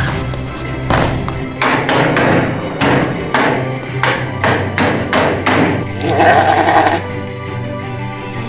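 A quick series of sharp knocks as a hand smashes walnuts on a small wooden table, cracking the shells, heard over background music. A brief louder burst follows about six seconds in.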